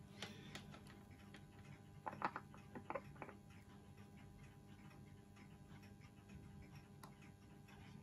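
Near silence with a few faint light clicks: metal multimeter probe tips tapping and slipping on the small armature's commutator while a resistance reading is taken. A small cluster of clicks comes about two to three seconds in, and one more near the end.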